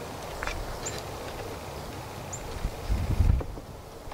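Wooden cabinet parts being handled and fitted by hand, with a light knock of wood about half a second in. Low wind rumble on the microphone swells near the end, and faint high chirps come twice.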